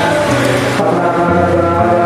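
Hindu devotional chanting set to music, voices holding long steady notes over a low sustained drone.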